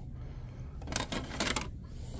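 Hard plastic party tray and cup being handled on a store shelf: two short scraping, knocking handling noises about a second in, over a low steady hum.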